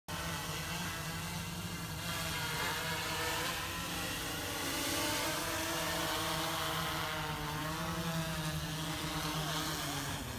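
Quadcopter drone's propellers buzzing with a slowly wavering pitch as it flies in low and sets down on the path to land.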